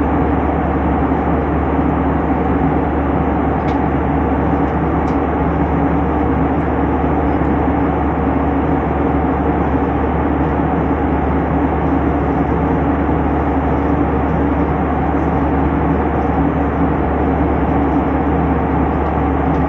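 Steady airliner cabin noise at cruise altitude: the jet engines and rushing air blend into an even drone with a strong low hum. A couple of faint clicks sound about four and five seconds in.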